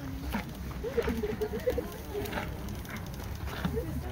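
Indistinct voices in the background over a low, steady rumble of wind on the phone's microphone, with a few faint clicks.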